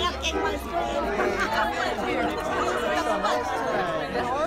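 Several people talking over one another at close range: lively group chatter, many voices overlapping with no single voice standing out.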